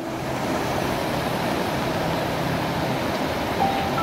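Rushing water of a rocky mountain river, white-water rapids pouring over boulders in a steady roar.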